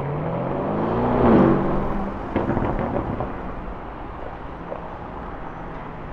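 Lamborghini Urus twin-turbo V8 accelerating away, its revs rising over the first second and a half to a loud peak. The engine note then drops and fades as the car moves off down the street.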